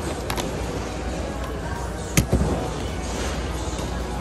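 Two sharp knocks over a steady low rumble of busy room noise. The louder knock comes about two seconds in.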